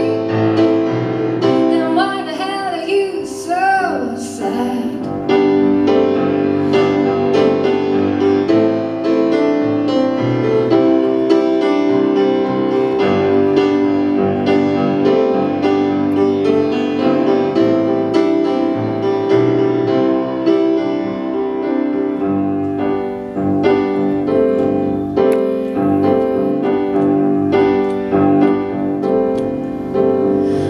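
Piano played solo in a steady flow of chords and notes. In the first few seconds a woman's singing voice finishes a phrase over it, and the piano carries on alone.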